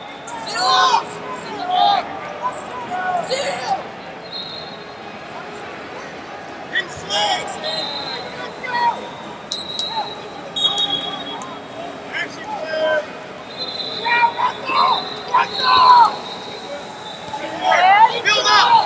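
Shouting voices of coaches and spectators echoing through a large arena hall during a wrestling bout, in short calls that come and go, with a few brief high steady tones like distant whistles.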